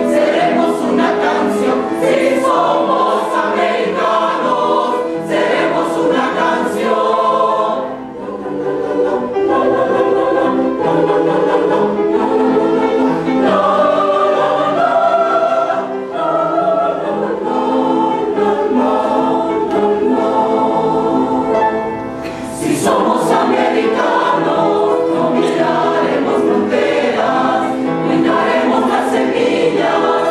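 Mixed choir of men's and women's voices singing together in parts, with short breaks between phrases about eight and twenty-two seconds in.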